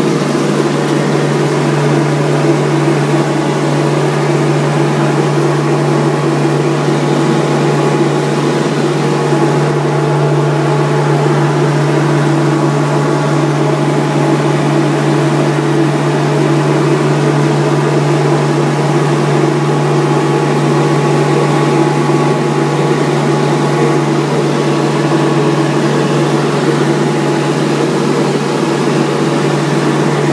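Knelson-type gold centrifugal concentrator running, its drive and spinning bowl giving a steady low hum under an even rushing noise.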